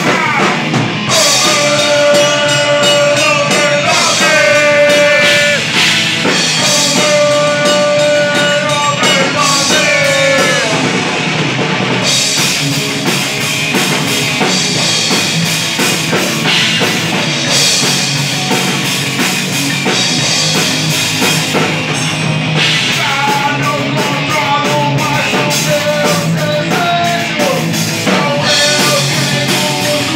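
Live heavy metal band playing loud and continuously: distorted electric guitar, bass and drum kit, with a singer's vocals over them.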